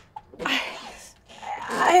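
A woman whimpering and gasping in pain over her bleeding hand: a sharp breathy gasp about half a second in, then a rising, strained whimper near the end.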